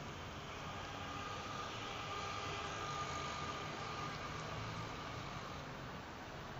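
Faint steady background noise that swells slightly in the middle and eases off again.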